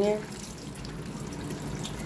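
Kitchen tap running steadily onto small potatoes being rubbed clean by hand in a stainless steel bowl.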